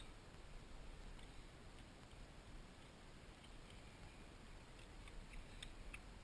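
Near silence, with a few faint, scattered small clicks of a flat screwdriver working the fuel-line hose clamps on an outboard's fuel pump.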